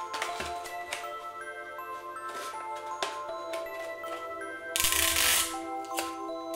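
Background music with chiming notes. About five seconds in, a short loud rip of sticky tape being pulled off a tape dispenser.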